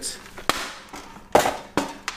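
Handling noise from a cardboard box and small plastic-wrapped hardware parts: three sharp taps and clicks, the middle one followed by a brief plastic rustle.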